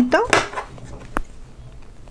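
A single sharp click about a second in, as a small trimming cut is made to take off leftover material.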